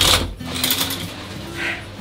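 Shower curtain swept across its rail: a sudden loud swish at the start, then a few shorter swishes.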